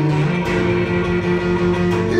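Live band music led by guitar, holding steady sustained notes that shift pitch about a quarter second in.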